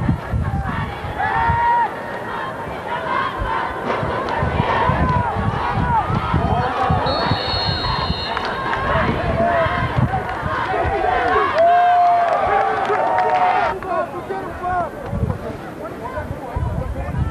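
Football crowd yelling and cheering over one another during a play, loudest a little past the middle. A short high whistle blast sounds about seven seconds in.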